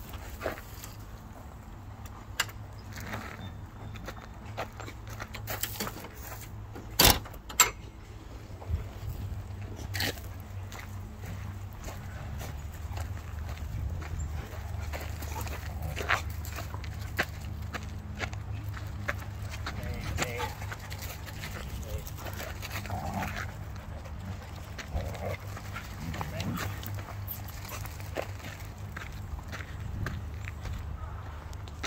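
Dogs playing and making short sounds at each other, over a steady low rumble of walking and phone handling. Two sharp knocks stand out about seven seconds in.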